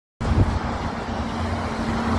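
City street traffic noise: cars passing on a wet road, heard as a steady wash with a constant low hum under it. There is a short bump just after the sound starts.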